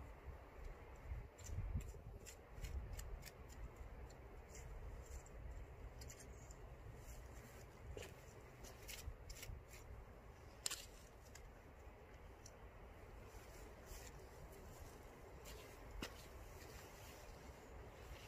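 Faint scraping and scratching of a small hand garden tool raking loose garden soil, in short irregular strokes, with a sharper scrape about ten seconds in.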